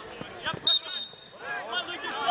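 A football thuds off a boot about half a second in. It is followed at once by a short, loud, high whistle blast about half a second long, with players shouting around it.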